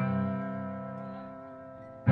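A rock band's electric guitar and bass hold a single chord that rings on and fades away steadily, with no new notes struck.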